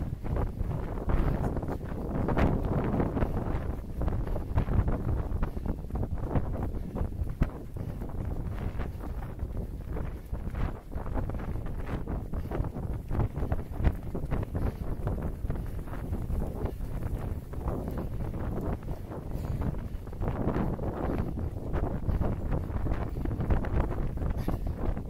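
Wind buffeting the microphone of a camera carried by a running person: a steady low rush that rises and falls throughout.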